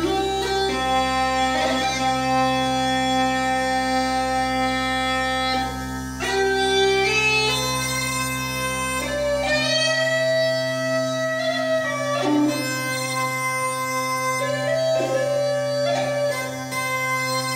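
Uilleann pipes played solo: the chanter plays a slow melody of long held notes over steady drones. About ten seconds in the deepest drone drops out and the melody goes on over the higher drones.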